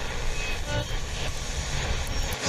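The opening of a song playing back from the music software: a steady rushing noise over a low rumble, with no beat or vocals yet.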